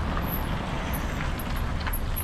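Street traffic noise, with a car driving past on wet asphalt.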